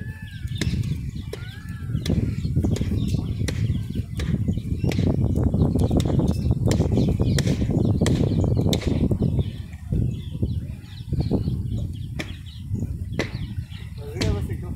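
Footsteps on the wooden plank deck of a suspension footbridge, sharp knocks every half second or so, over a loud, gusting low rumble of wind on the microphone.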